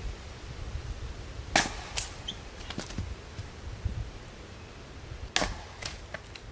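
Axe splitting a log on a chopping block: two sharp cracking strikes about four seconds apart, each followed by a few lighter knocks.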